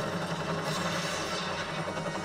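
Action-film soundtrack played back: a military helicopter running steadily, mixed with background score.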